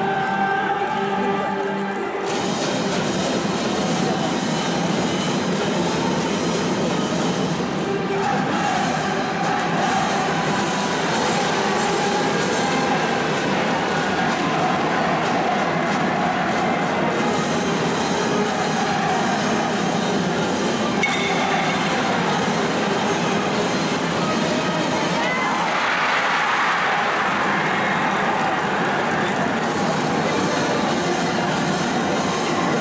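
A high school baseball cheering section: a brass band playing with a mass of students chanting and cheering along, a dense, steady wall of sound.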